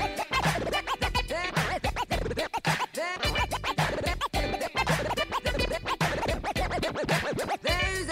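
DJ scratching a record on a turntable: the vinyl is pushed back and forth under the needle in quick rising and falling pitch sweeps, cut against a steady beat.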